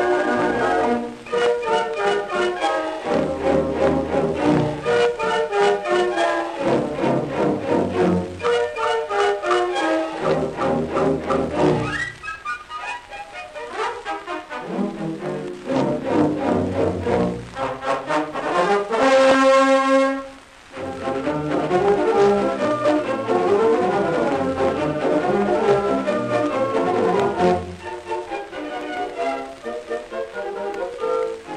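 Dance orchestra playing an instrumental number from a 1930 Victor 33 rpm Program Transcription record. About two-thirds of the way through, a held chord ends with a brief drop, then the band starts up again.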